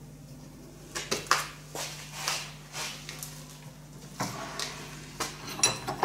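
A series of metallic clinks, knocks and scrapes from a manual UB100 bar bender as a 10 mm hot-rolled steel round bar is bent cold in its dies and handled, starting about a second in.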